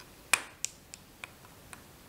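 A series of short, sharp clicks, the loudest first and four fainter ones after it at about three a second, from hands and tools working at a fly-tying vise as a fur dubbing loop is wound round the hook.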